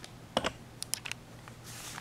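A few light clicks and taps, the first the loudest, then a short soft rustle near the end, from handling a paintbrush and thin paper on a tabletop.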